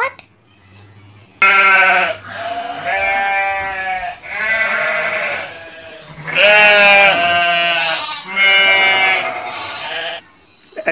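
Goats bleating: a run of about five long bleats one after another, starting about a second and a half in.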